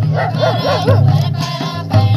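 A group of women singing a welcome song to the beat of a barrel drum. Early in the first second one voice wavers quickly up and down in pitch for about half a second.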